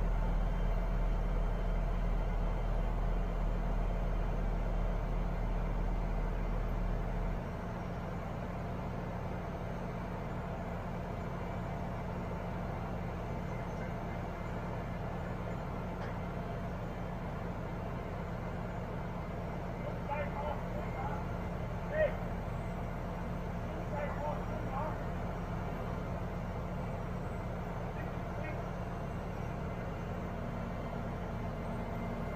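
Liebherr LTM1230-5.1 mobile crane's diesel engine running steadily at idle with a deep rumble that drops away about a quarter of the way in. Faint voices and a few small metal knocks come in the second half, one sharper knock about two-thirds through.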